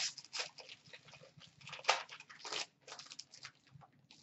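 2017-18 Upper Deck SP Game Used hockey card pack being torn open, its foil wrapper crinkling and ripping in irregular crackles, the loudest a little under two seconds in.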